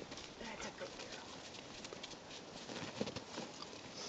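Faint, scattered crunching and pattering of setter puppies' paws and a person's boots moving over snow, in quick irregular steps.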